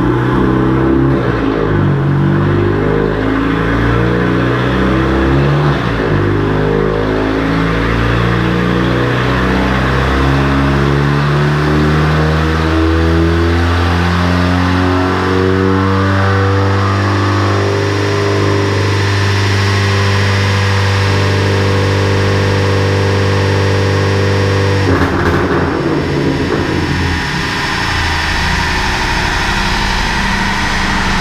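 Volkswagen Jetta's engine at full throttle on a chassis dynamometer, its pitch climbing slowly and steadily through one long power run. About 25 seconds in the throttle is cut suddenly and the engine drops back toward idle while the rollers wind down.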